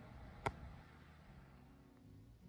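Quiet room tone with a single short, sharp click about half a second in.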